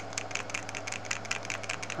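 A stir stick ticking and scraping quickly against the inside of a small plastic cup as UV resin is stirred, about ten ticks a second, over a steady low electrical hum.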